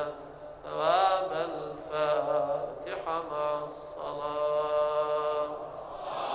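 A man's voice chanting a supplication in slow, melodic intonation, with long held notes and short pauses between phrases.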